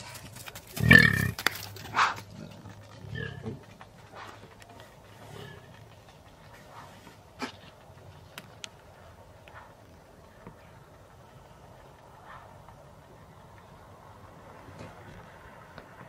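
A few loud, low warthog grunts in the first three seconds, the strongest about a second in, then faint bush ambience with scattered small ticks.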